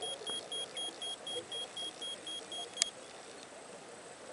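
A rapid series of short, high electronic beeps, about four a second, from a beeper carried underwater on a dive. The beeps stop with a sharp click about three seconds in, leaving a faint underwater hiss.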